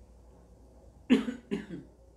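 A man coughs twice in quick succession about a second in, the first cough the louder.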